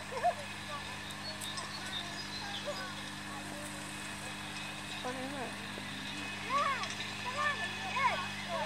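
Indistinct voices of other visitors in the background, sparse at first and busier about six seconds in, over a steady low hum.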